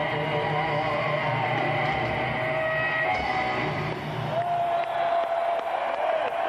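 Live heavy metal band with distorted electric guitar, heard from among the audience. About four seconds in, the bass drops away as the song ends, leaving a held tone and crowd noise.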